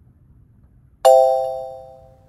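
A single bright chime sound effect, struck once about a second in and ringing out as it fades; it marks the answer being revealed on the quiz slide.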